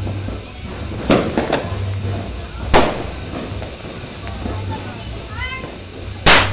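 Firecrackers going off: a quick cluster of three bangs about a second in, then a single louder bang near the middle. Under them runs the steady hiss of a ground fountain firework spraying sparks.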